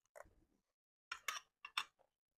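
Metal spoons scooping jollof rice from a glass dish: a few short clicks and scrapes of spoon on glass, bunched in twos near the middle and end.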